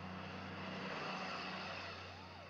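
A truck driving past, its noise swelling to a peak about halfway through and then fading away.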